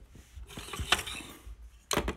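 Fabric of a sleeve rustling against the phone's microphone, with a few sharp clicks of plastic LEGO pieces being handled. The loudest click comes near the end.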